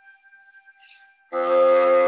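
Instrumental music of held, reedy notes with no beat: a faint lingering note, then a loud sustained chord that comes in about a second and a half in.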